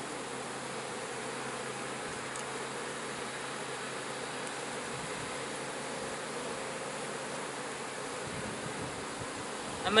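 Honey bees buzzing steadily from an open hive whose colony is being worked frame by frame, an even hum with no breaks.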